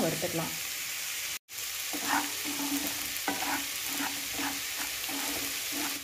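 Chopped vegetables frying in oil in a pan, a steady sizzle, with a spatula stirring and scraping through them. The sound breaks off briefly about a second and a half in.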